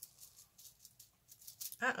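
Stacked bracelets clicking and rattling faintly against each other as they are handled on the wrist and get tangled. A woman says "uh-oh" near the end.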